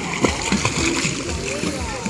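Water splashing as two snorkelers kick and paddle in shallow sea water, with people's voices in the background.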